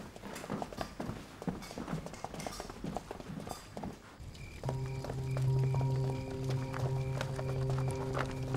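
Boots stepping on a hard floor, several people walking with irregular knocking steps. About four and a half seconds in, a dramatic film score comes in: a sustained low drone with a steady ticking pulse about twice a second.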